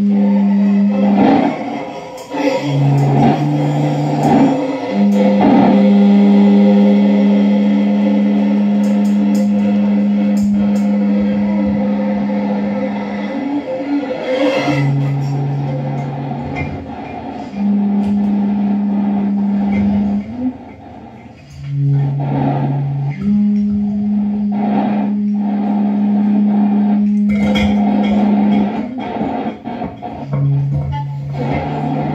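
Live free-improvised music for violin, saxophones, electric guitar and electronics: a loud, steady low drone that switches back and forth between two pitches every few seconds, under scraping and clicking textures, with a brief drop in loudness a little past two-thirds of the way through.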